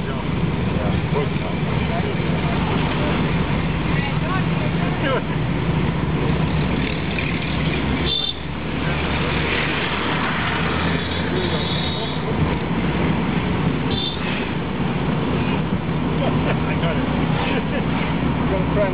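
Car engine and road noise heard from inside a moving car's cabin, a steady rumble, with a few short high-pitched beeps from the traffic about midway and again later.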